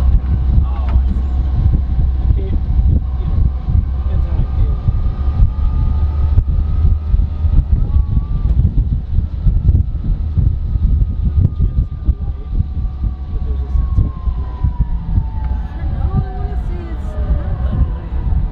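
Cabin noise inside a moving vintage Volkswagen split-window bus: a steady low road rumble with frequent body rattles. A faint whine falls slowly in pitch over the second half.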